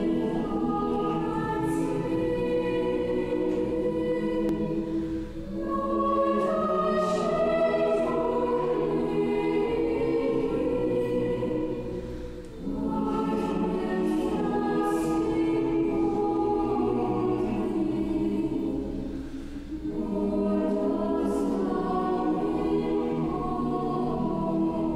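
A choir singing slow, sustained phrases, each about seven seconds long, with a short break between them.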